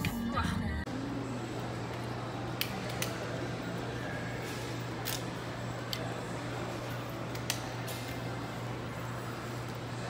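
A moment of laughter, then the steady background noise of a shopping mall concourse with a low hum and a few faint, scattered clicks.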